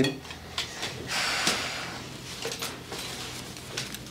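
Dishes and cutlery clinking and knocking at a dinner table as a bowl of stew is handled, with a brief scraping noise lasting about a second, starting about a second in.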